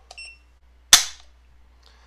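A single sharp metallic click about a second in: the hammer of a Rise Armament Rave 140 drop-in trigger falling as the trigger breaks under a trigger-pull gauge on an unloaded AR rifle, at about three pounds six ounces of pull.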